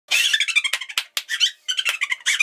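Very high-pitched, squeaky laughter in quick, choppy bursts, pitched up like a sped-up voice.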